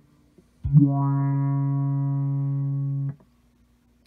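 A single electric guitar note, plucked about a second in, held steady for about two and a half seconds and then cut off short. It plays through a Chase Bliss Condor's low-pass filter, with resonance at its highest and swept by an envelope follower from the Empress ZOIA, set so the filter should open as the note is played.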